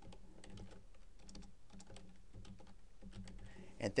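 Typing on a computer keyboard: a quick, irregular run of key clicks as a web address is entered, with a spoken word just at the end.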